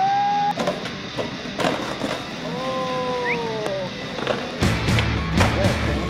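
Skateboard on concrete: sharp clacks of the board popping and landing. Music with a heavy bass comes in about two-thirds of the way through.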